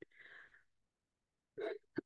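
Faint, short intake of breath by the speaker at the microphone in a pause between sentences, with a brief soft mouth or vocal sound near the end as speech resumes.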